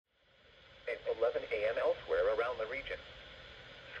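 A broadcast weather-report voice from a First Alert WX-150 weather radio's speaker, tuned to NOAA Weather Radio, over a steady radio hiss. The hiss fades in first, and the voice stops about three seconds in.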